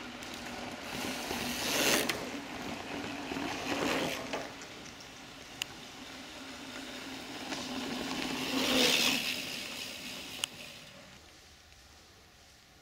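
Mountain bikes rolling past close by on a dirt forest singletrack: tyre noise on the loose dirt and dry leaves swells and fades as riders go by, loudest about two seconds in, again near four seconds and around nine seconds, with two sharp clicks from the bikes in between.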